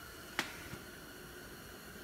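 Faint room tone with a thin steady hum, broken by one sharp click a little under half a second in.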